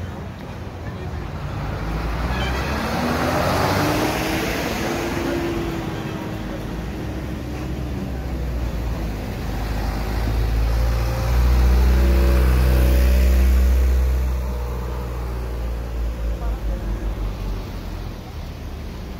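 Street traffic: a minibus drives past close by, its engine note rising as it accelerates. Later comes a loud low rumble, then a low pulsing near the end.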